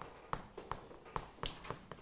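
Chalk writing on a chalkboard: short, sharp taps of the chalk striking the board, a few each second and unevenly spaced.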